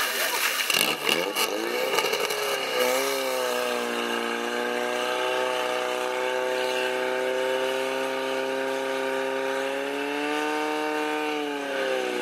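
Portable fire pump's engine running at high, steady revs after it is opened up about three seconds in, driving water through the attack hoses. Its pitch lifts again near the end, then drops. Knocks and splashes come in the first two seconds, as the hoses go into the water tank.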